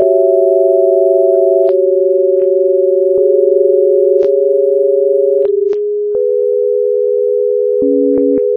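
Electronic sine-wave tones, two or three held together in a low-middle register, each jumping abruptly to a new steady pitch every second or few, with a click at each change.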